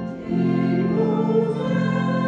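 A small choir singing a Christmas carol in long held chords, with a brief break just after the start before the next chord.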